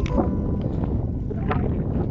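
Wind buffeting the microphone, a steady low rumble, with a few sharp crunching footsteps on a loose-stone dirt road.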